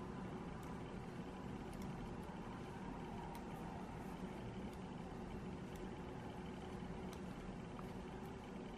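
Quiet, steady background hum and hiss with a few faint, irregular ticks of metal knitting needles working yarn.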